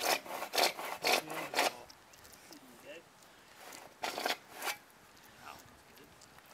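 Hand saw cutting through a plastic pipe in quick back-and-forth strokes: about four strokes in the first two seconds, a pause, then a burst of three more about four seconds in.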